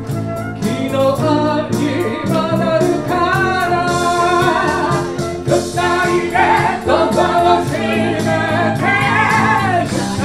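A woman singing a melody into a microphone over a small live band of flute, electric guitar and keyboards.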